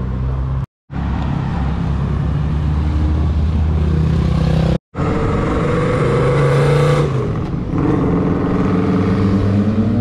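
Road vehicle engines running and accelerating, cut short twice by brief dropouts to silence, about a second in and at the midpoint. In the second half an engine rises in pitch as it speeds up, and near the end another starts rising as motorcycles ride toward the camera.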